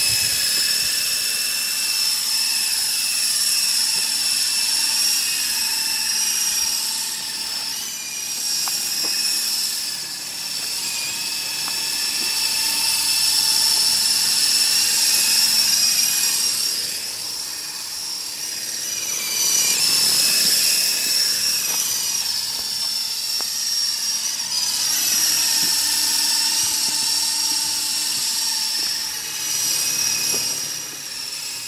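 Double Horse 9053 coaxial RC helicopter in flight: the whine of its small electric motors and rotors. The high pitch wavers up and down, and the sound swells and fades as the helicopter moves around.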